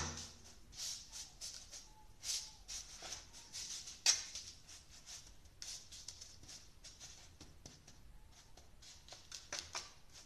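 A metal spoon pressing and scraping a buttery biscuit-crumb base flat in a metal springform pan: soft, irregular scrapes and taps, with one sharper click about four seconds in.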